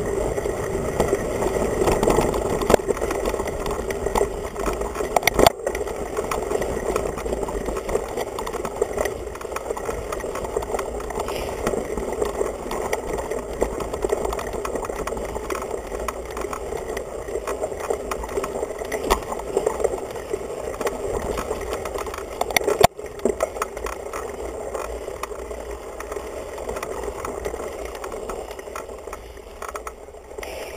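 Mountain bike rolling over a rough dirt trail, picked up through a handlebar-mounted GoPro that carries the sound of the frame: a continuous rattling rumble of tyres, chain and frame, with two sharp knocks, one about five seconds in and another about two-thirds of the way through.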